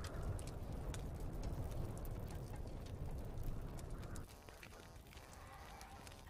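Night-time wilderness ambience: a low rumble of wind with scattered sharp crackles from a campfire. About four seconds in it drops to a quieter, thinner background.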